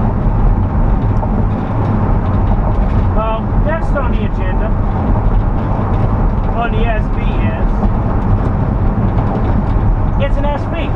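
Steady drone of a Ford van cruising at highway speed, heard inside the cab: engine hum under a constant wash of tyre and road noise. Brief snatches of a voice come through twice, a few seconds in and again around the seventh second.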